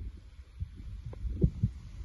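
Footsteps and handling of a handheld camera: irregular low thuds and rumble, with a couple of sharper knocks in the second half.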